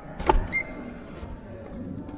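A wooden door being pushed open: a sharp knock of the latch or handle, then a brief high squeak from the door as it swings.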